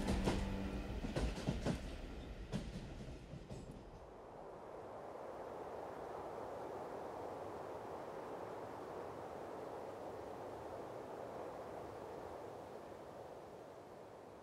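A passenger train running on the rails, with a few sharp wheel clacks over the first few seconds as music fades out, followed by a steady, even rushing noise that slowly fades.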